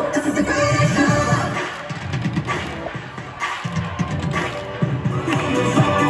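Upbeat pop dance music with singing and a steady beat, played over stadium loudspeakers for a dance team's routine; it drops in level briefly around the middle.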